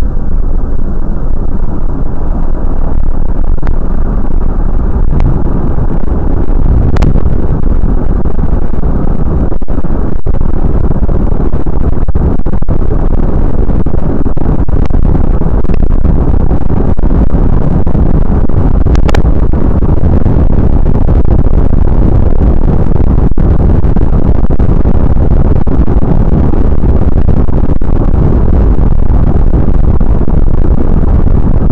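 Car driving at road speed, heard from inside the cabin: loud, steady road and engine noise with no letup, and a couple of brief clicks.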